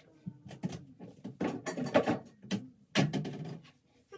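Irregular rustling and knocks as small hair-care items are picked up and handled.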